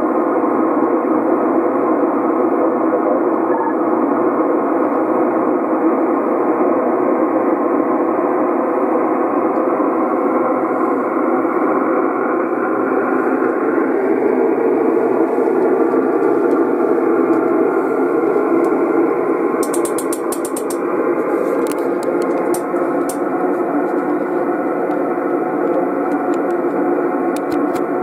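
Steady static hiss from a Yaesu FT-450D transceiver's speaker, receiving on 27.555 MHz upper sideband in the 11 m band. The hiss is dull, with the top cut off by the receiver's narrow audio passband. A few faint clicks come in the last third.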